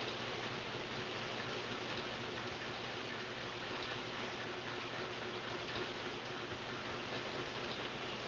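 Steady, even hiss of background noise with a faint low hum underneath; no sudden sounds.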